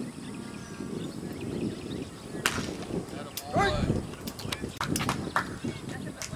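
People's voices calling out across an outdoor ballfield, unclear and not close, with one louder shout about three and a half seconds in and several sharp clicks in the second half.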